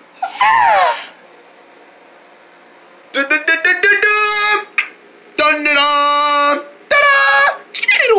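A high human voice making wordless squeals and cries. There is a falling cry at the start, a quick run of short yelps about three seconds in, then two long held squeals.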